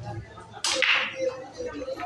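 Pool break shot on a ten-ball rack: a sharp crack about half a second in as the cue ball drives into the rack, followed by the clatter of the balls scattering.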